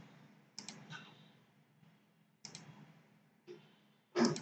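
A handful of faint computer mouse clicks, some in quick pairs.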